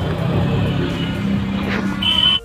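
Steady low rumble of a car's engine and road noise heard inside the cabin, with music faintly underneath.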